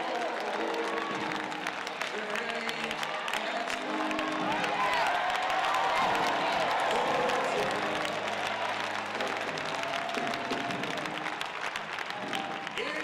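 Orchestra holding soft sustained chords, with applause and calls from the audience throughout; a man's voice sings long sliding phrases over it in places.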